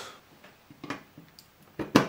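A few faint taps, then a sharp clunk near the end as a plug is pushed into a stiff, clunky port on a mini PC's metal case.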